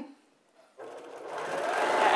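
Baby Lock Accomplish straight-stitch sewing machine starting up about a second in and stitching a seam through pieced quilt fabric, its running sound growing steadily louder.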